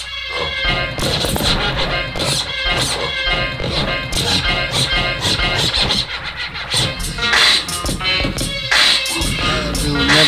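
Hip-hop beat with a DJ scratching a record on the turntable over it, in quick repeated strokes.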